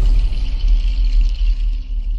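Deep, steady low rumble of a TV channel's logo ident, opening with a sharp hit and carrying a high shimmering layer that fades shortly before the end.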